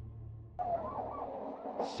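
Intro music cuts off about half a second in and gives way to trackside sound: short, wavering high-pitched calls, typical of greyhounds whining and yelping in the starting boxes as the lure approaches.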